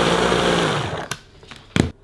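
Electric mini chopper on a stick blender whizzing chunks of roasted squash, spinach and pine nuts into a paste; the motor runs loud and then winds down about a second in. Two sharp knocks follow, the second louder.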